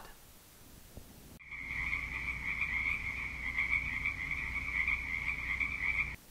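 A stock night-chorus sound effect of chirping creatures, croaking to the tagger, cut in abruptly after about a second and a half of near silence and running steadily until it cuts off at the end. It is the classic gag for an answer of dead silence: no reply came.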